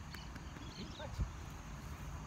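Outdoor background noise: a steady low rumble with faint high chirps, and one short thump just over a second in.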